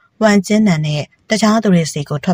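Speech only: one voice reading a story aloud in short phrases, with a brief pause about a second in.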